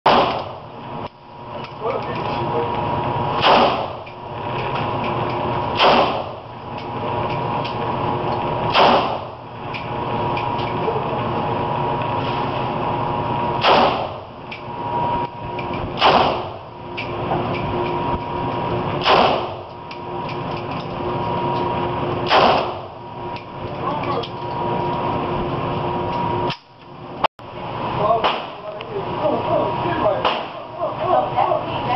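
AK-47 rifle firing single aimed shots, about eight of them a few seconds apart, each a sharp crack with a short ring in a large indoor range. A steady hum runs underneath, and the sound drops out briefly near the end.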